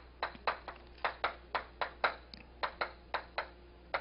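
Chalk writing on a chalkboard: an uneven run of short, sharp taps, about four a second, as each stroke of the characters hits the board.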